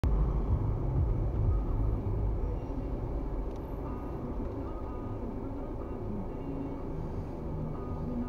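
Car interior noise picked up by a dashboard camera: low engine and road rumble, louder in the first two seconds while the car is moving, then quieter and steady as it slows to a halt in traffic.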